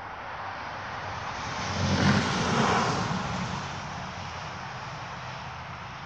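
A vehicle passing by: a rushing noise with a low rumble that grows louder, is loudest about two to three seconds in, then fades away.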